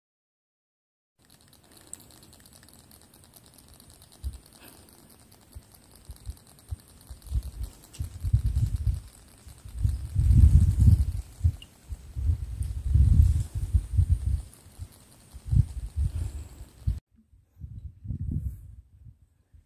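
Muffled low rumbling in irregular bursts, growing from about seven seconds in: handling or wind noise on a handheld phone's microphone. It cuts off suddenly near the end.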